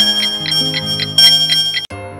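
Cartoon music with an alarm-clock effect: a high, steady bell-like ringing and a regular tick about four times a second. Everything cuts off abruptly just before the end.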